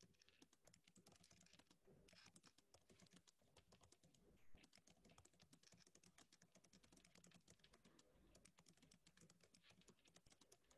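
Faint typing on a computer keyboard: many quick, irregular key clicks, with one slightly louder knock about four and a half seconds in.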